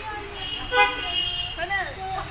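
Car horn honking once, a steady tone lasting about a second, starting about half a second in.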